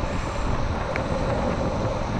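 Wind rushing over a body-worn microphone on a downhill longboarder at speed, with the steady rolling noise of skateboard wheels on asphalt.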